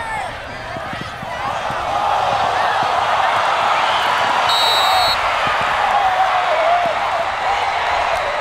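Football stadium crowd cheering and shouting a touchdown run, the many voices swelling about two seconds in and staying loud. A short, steady, high whistle blast, about half a second long, sounds about halfway through, fitting a referee's whistle as the play ends.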